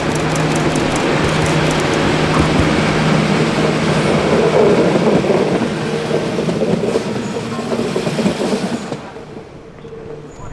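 ČD RegioShark (class 844) diesel multiple unit passing close by, with a steady engine drone over the rumble of its wheels on the rails. It is loudest about halfway through, and the sound drops away sharply shortly before the end.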